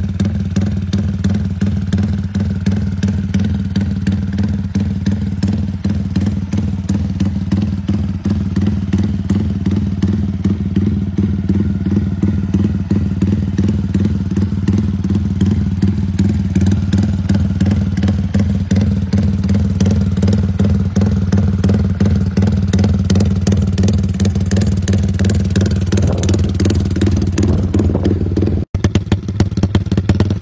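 An engine running steadily at a constant speed, with a fast even pulsing; it drops out briefly near the end and picks up again.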